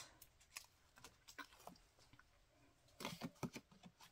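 Quiet handling of a cardstock card base: faint paper rustles and small taps, with a short run of sharper clicks about three seconds in.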